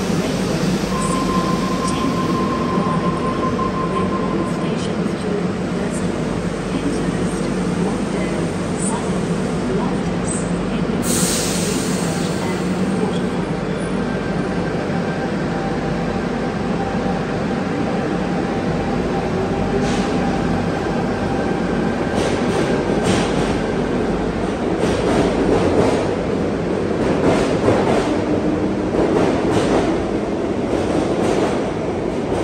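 Tangara double-deck electric train in an underground station: its equipment hums steadily while it stands at the platform, with a short burst of hiss about eleven seconds in as the doors shut. In the last several seconds it pulls away, its traction motors rising in pitch and its wheels clattering, getting louder as it passes.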